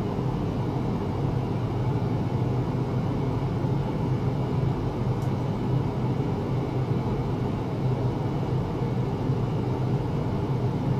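A steady low hum with a noisy rumble, unchanging throughout.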